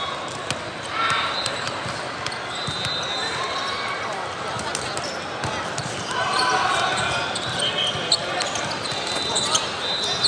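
Indoor volleyball rally in a large, echoing hall: the ball being hit, sneakers squeaking on the sport court, and players calling out, over a steady hubbub of voices from the surrounding courts.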